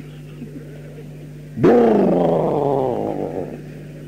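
A man's voice gives one long drawn-out cry that starts suddenly, wavers, and slowly falls in pitch and fades over about two seconds. Before it there is a steady electrical hum.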